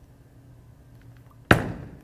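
Bowling ball released onto the lane at the foul line: one sharp thud near the end, fading briefly as the ball starts rolling, over a low steady background hum.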